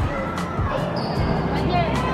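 Indistinct chatter of a crowd of visitors in a large indoor hall, with dull low thumps and some music in the background. A short high tone sounds about a second in.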